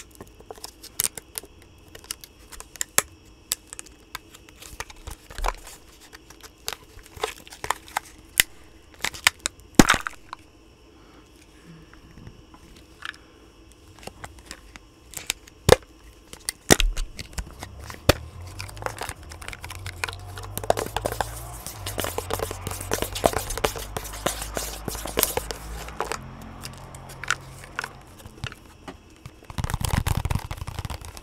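A wax melt and its packaging handled close to a microphone: scattered sharp clicks and snaps, then a denser stretch of crackling and crinkling about halfway through, with a low rumble of handling.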